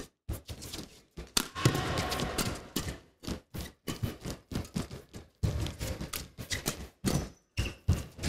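Badminton doubles rally: rackets strike the shuttlecock again and again in quick, irregular exchanges, over the background noise of an indoor arena.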